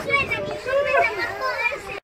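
High-pitched children's voices calling out and chattering, without clear words.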